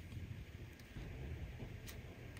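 Faint handling of cardstock as a paper sentiment strip is slid through slits in a card front, with one small tick near the end over a low room rumble.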